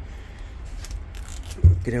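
Handling noise from hands moving over the taped wiring of a mechanical bull's small electric motor, with a few faint clicks and light metallic jingles, then one dull low thump shortly before the end.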